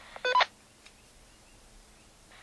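Handheld walkie-talkie giving one short electronic beep, about a quarter second long, the roger beep that marks the end of a transmission; a faint click follows.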